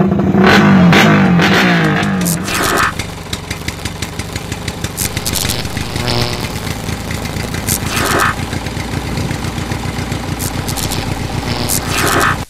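A motorcycle engine is revved hard, its pitch dropping over the first two or three seconds. It then keeps running with a fast, even firing rhythm until the sound cuts off suddenly.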